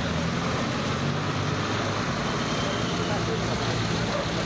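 Vehicle engines running with a steady low hum, under a continuous hiss and people's voices in the background.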